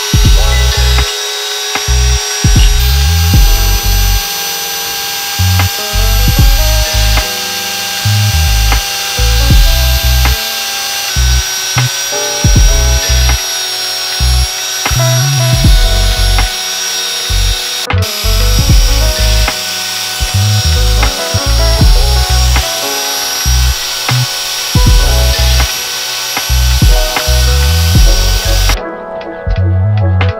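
Cordless drill spinning a brass wire cup brush against a rusty cast-iron engine block, a steady high whine that cuts off near the end. Under it runs background music with a steady beat.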